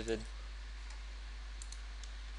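A few faint clicks of computer input while settings are adjusted, over a steady low hum.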